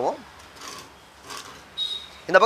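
A few faint, short rubbing scrapes of a hand handling a metal ABS valve block, after a man's voice cuts off at the start.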